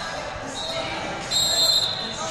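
A referee's whistle in a large hall: a steady high tone that swells into a loud blast about a second and a half in, over crowd chatter.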